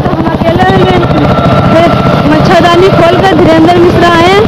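A woman speaking over a steady low rumble.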